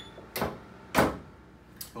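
Manual lever-operated heat press being closed: a light knock, then a louder clunk about a second in as the upper platen is pulled down and locks onto the lower platen.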